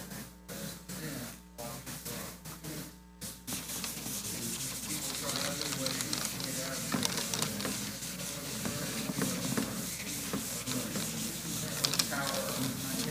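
Dry-erase marker scraping and squeaking on a whiteboard as a diagram is drawn and lettered. The strokes start a few seconds in and run as a steady scratchy rubbing, over a low murmur of voices.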